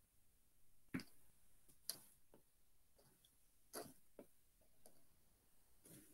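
Near silence broken by about six faint, sharp clicks at irregular intervals: a stylus tip tapping and touching down on a tablet's glass screen while inking lines.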